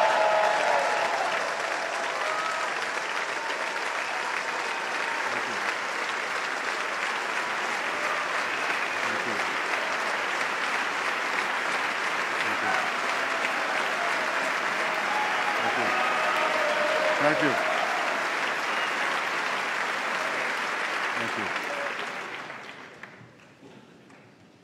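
A large audience applauding at length, with scattered voices in the crowd; the applause dies away about two seconds before the end.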